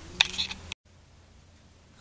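A few sharp clicks and knocks from a camera being handled, then an abrupt cut to faint, steady room tone.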